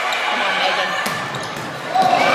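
Crowd voices echoing in a gymnasium during a volleyball rally, with one sharp smack of the volleyball being hit about a second in.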